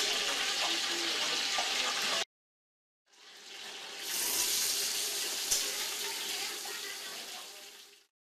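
Ostrich fillet searing in oil in a frying pan, a steady sizzle. It cuts off for about a second, then fades back in and slowly dies away near the end.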